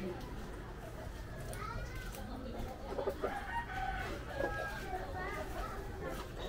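A rooster crowing, starting about a second and a half in, with voices in the background.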